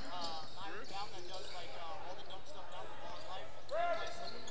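A basketball being dribbled on a hardwood gym floor during play, heard at a distance with the gym's echo. Short squeaking tones come and go throughout.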